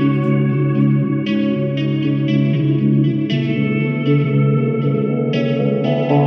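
Instrumental western-style trap beat: a plucked guitar melody, notes struck every second or so over sustained low notes. There are no drum or bass hits in this stretch.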